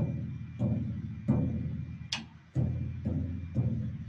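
Floor tom batter head tapped with a drumstick about half a dozen times, each tap ringing out low and fading before the next. The taps go round the edge of the head to compare the pitch at each tension rod and find a loose lug that is causing a rattle.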